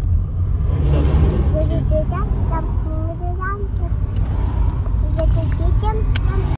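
Steady low road rumble of a moving car, heard from inside the cabin. Over it comes a child's voice in short, high, sliding sounds, with a laugh about two seconds in.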